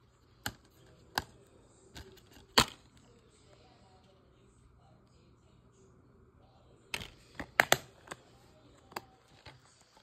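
Plastic DVD keep case being handled, opened and snapped shut: a few sharp plastic clicks in the first seconds, the loudest about two and a half seconds in, then a quick cluster of clicks and snaps about seven seconds in.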